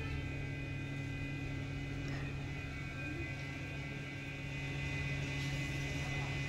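A steady low hum with fainter high tones above it, unchanging throughout.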